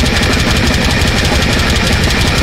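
Extreme metal played live: the drum kit is hit in a rapid, even stream of kick-drum and snare strokes under distorted bass guitar and cymbal wash.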